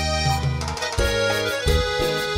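Instrumental passage of a Latin dance karaoke backing track, with a prominent bass line changing notes every half second or so under sustained melody and chords; no voice.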